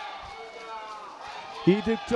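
Faint voices of players calling out on an outdoor pitch, then a much louder voice starts near the end.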